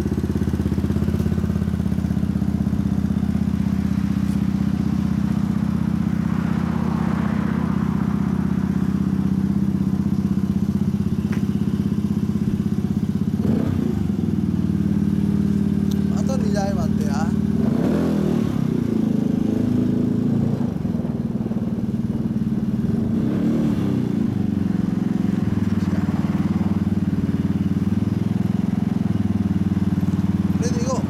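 2013 Yamaha Cygnus-X SR scooter's single-cylinder four-stroke engine idling steadily through a Realize Racing aftermarket muffler, with voices now and then in the background.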